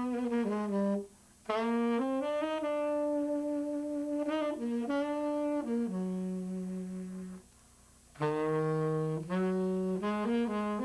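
Unaccompanied jazz tenor saxophone playing slow phrases of held notes, some dipping low. The phrases break off about a second in and again near the end.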